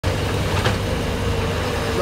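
Diesel engine of a mini excavator running steadily close by, a low rumble with a steady hum. A short click comes about two-thirds of a second in.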